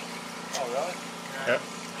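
A thin stream of Marvel Mystery Oil flush and used oil dribbling from a motorcycle engine into a plastic drain pan, rinsing out the remaining sludge, under a steady low hum. A short spoken word comes about half a second in, and a brief click follows near the middle.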